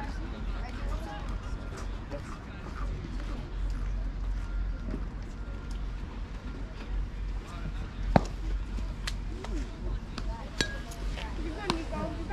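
Faint spectator chatter and calls at a baseball field, with one sharp smack about eight seconds in: a pitched baseball popping into the catcher's leather mitt.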